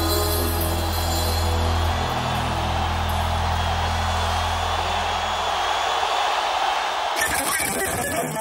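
A rock band's final held chord dying away over the first few seconds under a large stadium crowd cheering. A short burst of hiss comes near the end.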